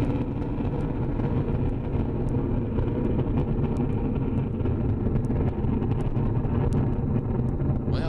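Ariane 5 rocket in powered climb, its two solid rocket boosters and Vulcain main engine making a loud, steady, deep rumble.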